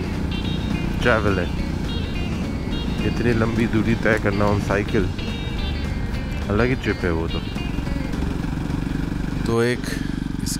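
Motorcycle engine running steadily while the bike is ridden along at a steady pace, under background music with a singing voice. The engine sound drops out briefly near the end.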